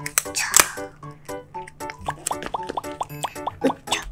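Light, bouncy children's background music made of short plucked notes, with a single sharp click about half a second in.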